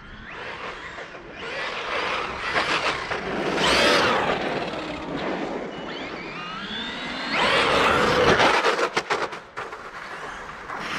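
Traxxas Maxx electric RC monster truck driving past, its brushless motor whining up and down in pitch as it accelerates and slows. It comes loudest twice, about four and eight seconds in, and a run of sharp ticks follows near the end.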